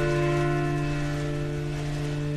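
Background piano music: a single held chord slowly dying away, with no new notes struck.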